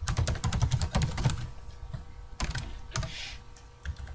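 Typing on a computer keyboard: a quick run of keystrokes, a short pause, then a few more keystrokes.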